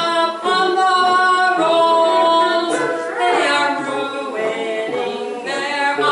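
A woman singing a song unaccompanied by instruments, holding long steady notes that change pitch every second or so.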